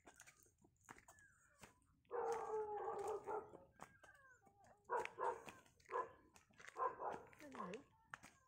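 A dog vocalizing: one drawn-out call about two seconds in, then a run of short barks, the last sliding down in pitch.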